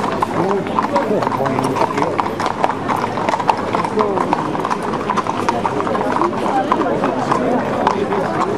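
Hooves of many white Camargue horses walking on a paved street: dense, irregular, overlapping hoofbeats, with crowd voices chattering underneath.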